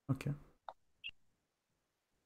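A man says "okay", then two short, faint computer mouse clicks follow about half a second apart as a browser menu item is chosen and its settings dialog opens.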